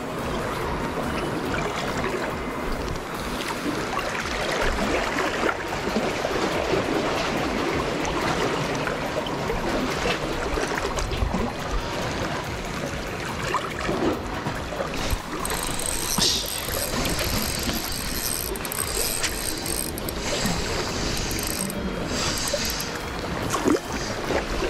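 Spinning reel being cranked, its gears turning, over a steady background of noise.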